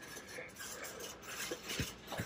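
Faint store background noise with a few light clicks and clinks, most of them in the second half.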